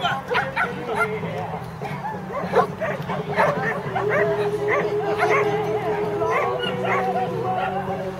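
A dog barking repeatedly, in quick short barks, while running an agility course.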